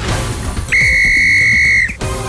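Intro music, then a single long, steady whistle blast that starts about two-thirds of a second in, holds one pitch for about a second and is the loudest sound. The music continues underneath.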